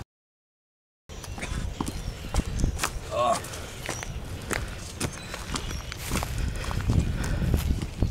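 Silent for about the first second, then a man's gasps and vocal noises over footsteps and scuffling on dry leaves and pavement as he stumbles and drops to his hands and knees.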